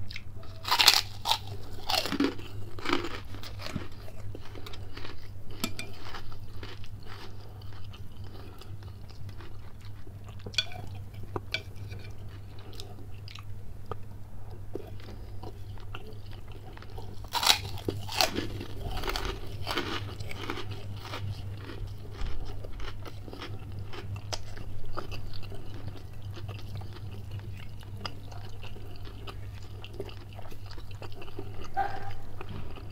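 Close-miked crunching of a puffed kerupuk cracker being bitten and chewed, in two loud spells, about a second in and again a little past halfway, with quieter chewing in between.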